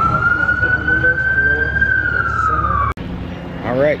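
Emergency vehicle siren wailing over the rumble of city traffic: one slow rise and fall in pitch, cut off suddenly about three seconds in.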